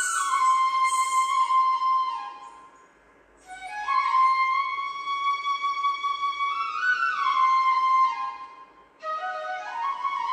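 Flute playing a slow, gliding melody in raga Khamaj, in phrases that break off twice: once about three seconds in and once near the end.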